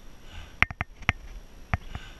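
A cyclist breathing hard on a steep uphill climb, with one heavy breath about half a second in and another at the very end. Several sharp clicks fall between the breaths.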